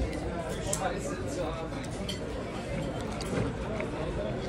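Restaurant background noise: indistinct chatter of other diners with a few faint clinks of dishes and cutlery.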